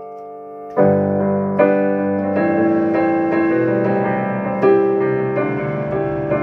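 Digital keyboard with a piano sound playing chords. A held chord fades away for most of the first second, then a new chord is struck and further chords follow, each ringing on.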